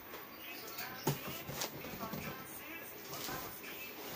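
Cardboard shipping box being opened by hand: the flaps rustle and scrape, with a sharp knock of cardboard about a second in.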